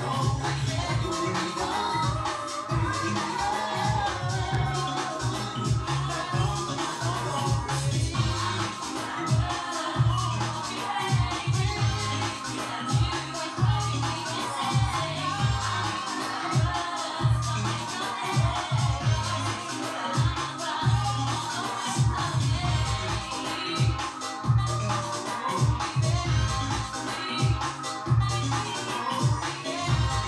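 Music played back from cassette on a Technics RS-BX501 stereo cassette deck: a home-recorded mixtape with a steady beat and strong bass.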